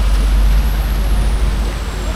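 Heavy rain falling steadily, an even loud hiss with a deep low rumble underneath.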